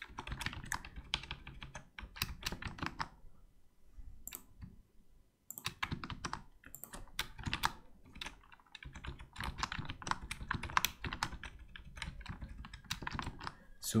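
Typing on a computer keyboard: quick runs of keystrokes, with a pause of about two seconds a third of the way in, then steady typing again.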